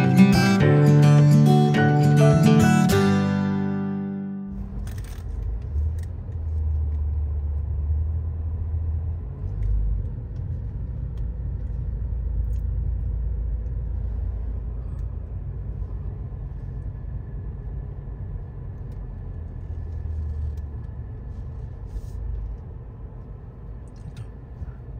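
Acoustic guitar music fades out in the first few seconds, giving way to the low, steady rumble of a car rolling slowly, heard from inside the cabin.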